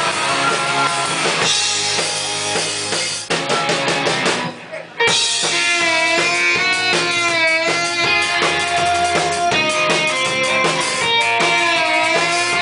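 A rock band playing live on drums and guitar, with no vocals. About three seconds in the playing thins out and drops away briefly. The full band comes back in at about five seconds with long held melodic notes over the beat.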